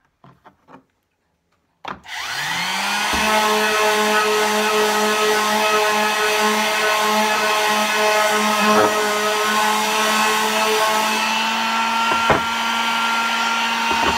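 Electric palm sander switched on about two seconds in, its motor rising in pitch as it spins up and then running steadily while sanding a wooden canvas frame, with a few light knocks of the sander against the wood.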